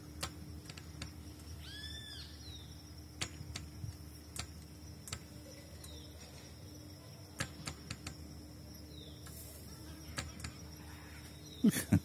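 Faint ambience of a chairlift ride: a steady low hum with scattered light clicks and taps. One short chirp that rises and falls comes about two seconds in, with a few fainter high chirps later.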